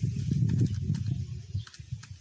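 Rapid low knocking and rubbing as a calculator is handled and pressed with a pen, dying away about a second and a half in.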